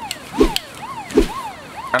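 Police siren in a fast yelp, its pitch rising and falling nearly three times a second, with two heavy thuds about half a second and a second in.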